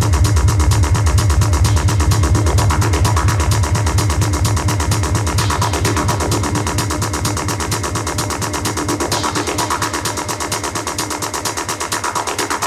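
Electronic dance music (techno/tech-house) from a DJ mix, with fast, even percussion ticking and a sustained synth texture. The deep bass gradually drops out and the overall level slowly falls, as in a breakdown or transition between tracks.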